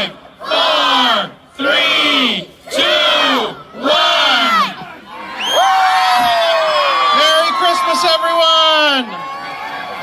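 A crowd shouting the last numbers of a countdown in unison, four calls about a second apart, then breaking into loud cheering with long high whoops and shrieks about five seconds in as the Christmas tree lights come on. The cheering drops to a lower crowd noise near the end.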